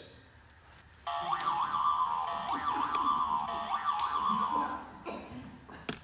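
A novelty Easter bunny toy giving off a high, warbling, tune-like sound. It starts about a second in and rises and falls in pitch for about three and a half seconds before fading.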